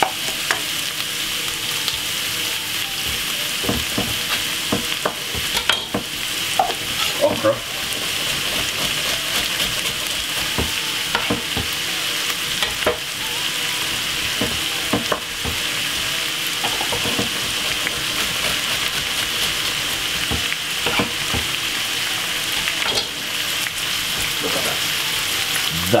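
Sliced vegetables sizzling steadily as they stir-fry in a non-stick wok, with a wooden spoon scraping and knocking against the pan now and then, mostly in the first half.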